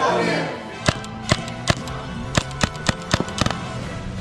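Paintball marker firing about nine sharp shots in quick, uneven succession, starting about a second in, over background music.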